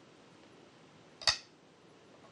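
A Go stone set down on a wooden Go board: one sharp click a little over a second in, with a brief bright ring.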